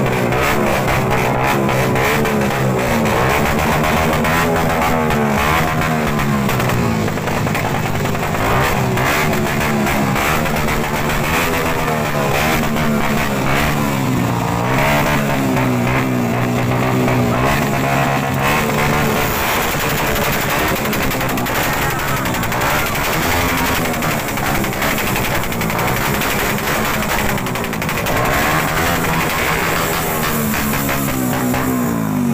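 Motorcycle engine revved up and down again and again, its pitch repeatedly rising and falling, with music playing loudly over it.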